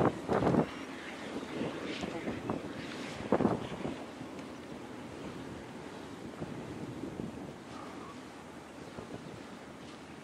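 Wind buffeting the camera's microphone in gusts, strongest about half a second in and again about three and a half seconds in, then settling into a steadier, quieter rush.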